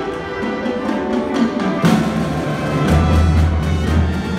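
High school marching band playing: massed brass and woodwinds over a drum line. A sharp percussion accent lands about two seconds in, and a deep low note swells in near the end.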